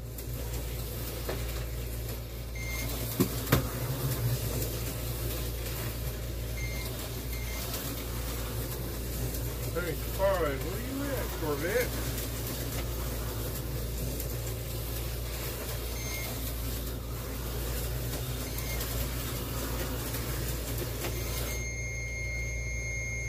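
Tyco 440-X2 slot cars running laps on the track, their small electric motors whirring steadily over a low hum. Short electronic beeps from the race computer sound every few seconds, and there are two sharp clicks about three seconds in.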